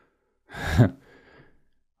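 A man's voiced sigh about half a second in, falling in pitch and trailing off into a breathy exhale.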